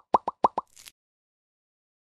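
Logo-animation sound effect: about five quick pops in the first half second, as the end-card icons pop onto the screen, followed by a short, faint hiss.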